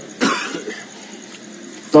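A man coughs once, sharply, about a quarter of a second in, then a brief pause.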